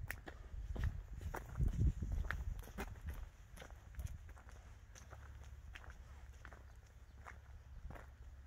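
Footsteps of a person walking on a road, short steps about two a second, thinning out in the second half, over a low rumble.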